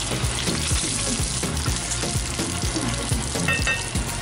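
Whole peeled hard-boiled eggs frying in hot oil in a nonstick pan, a steady sizzle, as a wooden spoon turns them to brown a crispy coating.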